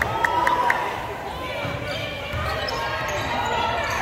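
A basketball being dribbled on a hardwood gym floor, with spectators' voices carrying through the hall.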